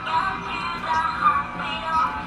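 Toy doctor's cart playing a tune with a sung voice from its built-in speaker, set off by pressing its button.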